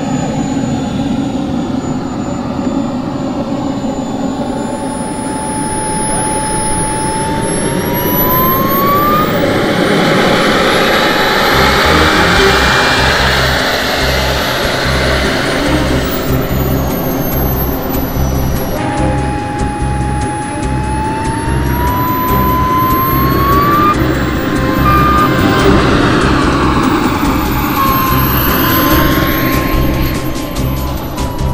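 ACEx80 model jet turbine whining, its pitch gliding up several times as it spools up, with a very high whistle sweeping up and down. Background music with a steady beat comes in about twelve seconds in.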